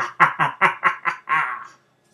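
A man laughing loudly in quick, evenly spaced 'ha' bursts, about five a second, growing quieter and ending in one longer drawn-out burst shortly before the end.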